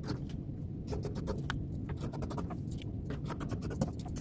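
Scissors cutting through white cotton T-shirt knit in a quick, irregular run of snips, several blade closures a second.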